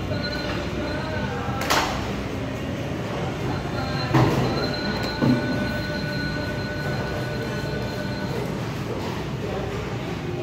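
Busy market-hall background: a steady hum with background voices. Sharp knocks come about two seconds in and again around four and five seconds in, and a thin high tone holds through the middle.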